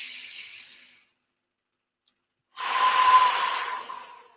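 A man takes a deep breath, prompted as part of a tapping exercise. A breath in fades out about a second in. After a short pause comes a longer, louder breath out, close to a headset microphone.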